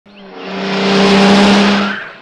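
Small pickup truck pulling up and braking to a stop, its tyres skidding on the dirt: a loud hiss that swells to a peak about a second in and fades near the end, over a steady low engine hum.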